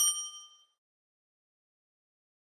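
A single bright ding sound effect: a notification-bell chime as the bell icon is clicked. It rings out and fades within about half a second.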